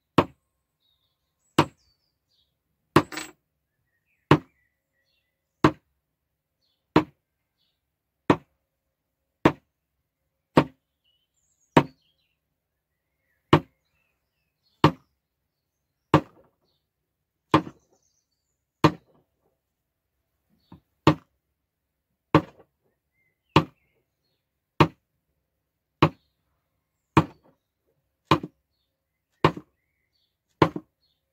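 Wooden mallet striking a leather stamp, punching a repeated diamond-with-dots pattern into a leather knife sheath laid on a wooden board. There are single sharp knocks at an even pace, about one every second and a bit, some two dozen in all.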